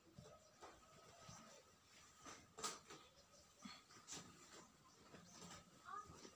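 Near silence, with a few faint, short rustles of cloth being handled and folded.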